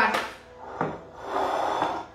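Handling noise at a glass salad bowl: a short knock about a second in, then a brief stretch of rustling and scraping as the salad is moved about.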